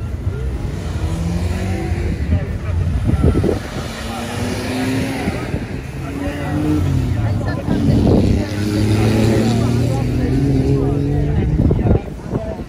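Car engines revving and accelerating hard away from a start line one after another, each engine's pitch rising as it pulls away, loudest in the second half.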